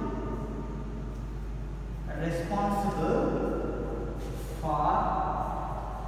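A man's voice, twice, in slow drawn-out words that the transcript does not catch, over a steady low electrical hum.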